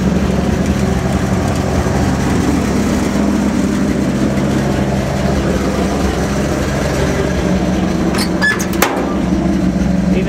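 Old Chevy 2-ton tow truck's engine idling with a steady low hum; the owner says it still needs to be made to run smoother. A few sharp clicks come near the end.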